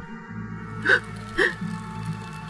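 Low, steady ambient background music drone, with two short gasp-like vocal sounds about a second in, half a second apart.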